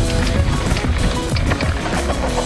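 Background music with held notes over a beat.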